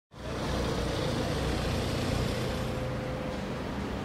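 Steady road-traffic rumble, fading in from silence at the start.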